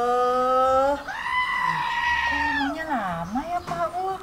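A woman's long, drawn-out whining wail with no clear words, jumping higher about a second in and sliding down in pitch near three seconds.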